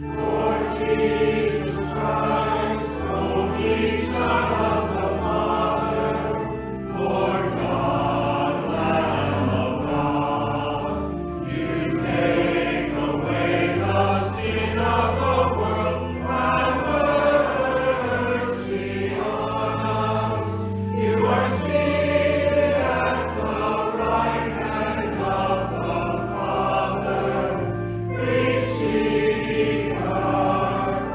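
A choir and congregation singing a hymn together over instrumental accompaniment with a steady bass line, in phrases a few seconds long with brief breaths between them.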